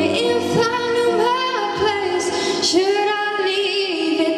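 A girl singing a slow melody in long held notes with a slight waver, over soft electronic keyboard accompaniment.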